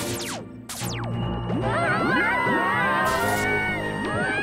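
Cartoon soundtrack: music over a steady low bass note, with two falling whooshes in the first second, then a tangle of warbling, wavering squeals from about a second and a half in.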